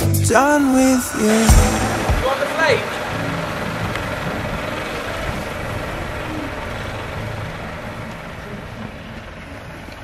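Background pop song with singing, carrying on for the first two or three seconds and then fading out. What remains is a steady, even noise that slowly gets quieter.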